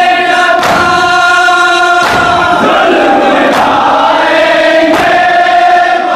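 Men's voices chanting a Muharram nauha (Shia lament) together, led at a microphone, in long held notes. A sharp slap of matam, chest-beating in unison, lands about every second and a half and keeps the beat.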